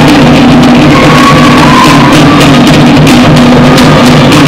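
Live Tahitian drum ensemble playing a fast, steady rhythm: wooden to'ere slit drums struck with sticks over a pahu bass drum, very loud.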